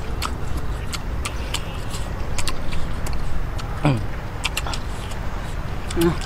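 Wet clicking and crunching of two people chewing boiled bamboo shoots, over a steady low rumble. About four seconds in, a short falling vocal sound, like a "hmm".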